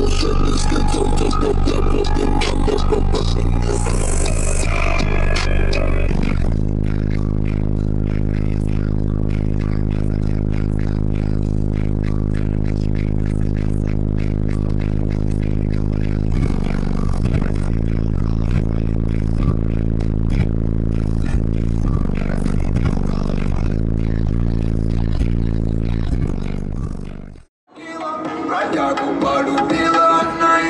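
Competition car audio system in a Skoda Octavia playing bass-heavy music very loud through its subwoofers. From about six seconds a long steady low bass note holds for about ten seconds, then the bass line changes. The sound fades out abruptly near the end.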